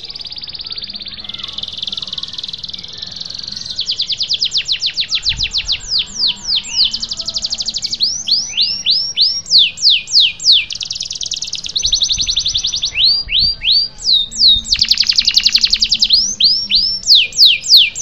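Domestic canary singing loudly in a long, rolling song that starts suddenly: fast, even trills alternate with runs of repeated rising and falling notes, each phrase repeated several times before the next begins.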